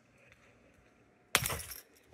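Near silence, then a sudden knock with a short rattle about a second and a half in that fades within half a second.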